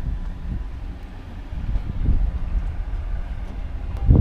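Wind buffeting an action camera's microphone: an uneven low rumble that dips quieter about a second in and builds again.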